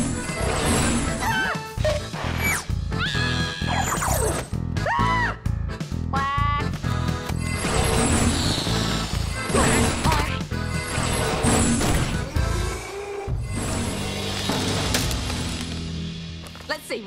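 Cartoon score with a steady bass line, overlaid with comic magic sound effects: several swooping whistle-like glides in the first half and crash-like hits.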